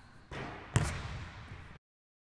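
A basketball bouncing on a hardwood sports-hall floor after a shot, the loudest bounce a little under a second in, with the hall's echo behind it. The sound cuts off abruptly near the end.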